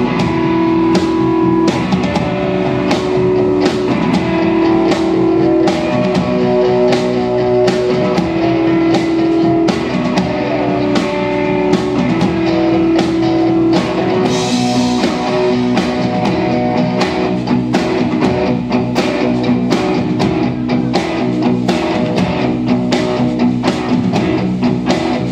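A live rock band playing an instrumental passage on electric guitars, bass guitar and drum kit, with sustained guitar notes over a steady drum beat.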